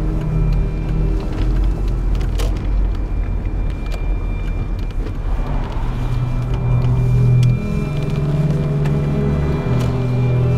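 Low rumble of a car being driven, heard from inside the cabin, under background music of long held low notes that grow louder in the second half.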